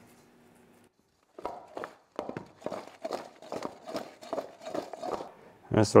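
Raw carrot and red onion pieces being tossed by hand with oil and seasoning in a stainless steel mixing bowl: a run of irregular short knocks and rustles, starting after about a second of quiet.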